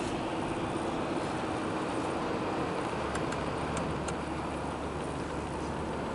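1992 first-generation Toyota Aristo driving slowly, heard from inside the cabin: steady engine and road noise, with a low hum that grows a little stronger about halfway through and a few faint clicks.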